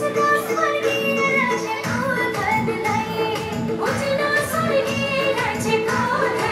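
Recorded song playing: a woman's voice sings a melody over a steady beat and backing instruments.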